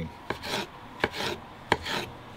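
Knife slicing fly agaric (Amanita muscaria) mushrooms on a wooden cutting board: three sharp taps of the blade on the board, about one every 0.7 s, each followed by a short swish of the blade.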